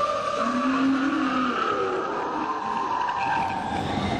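Matterhorn Bobsleds car running fast along its tubular steel track: a steady rushing rumble with a few drawn-out whining tones over it.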